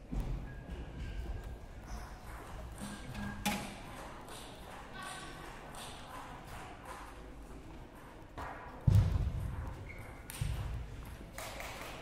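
Large hall's background din: distant voices and music, with a few scattered sharp clicks and a heavy thump about nine seconds in.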